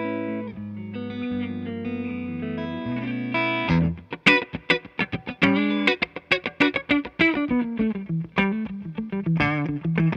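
Charvel Pro-Mod San Dimas Style 2 HH electric guitar with Seymour Duncan humbuckers, played through an amp with a clean tone. A few held, ringing chords open it, then a run of quickly picked notes and short chords starts about four seconds in.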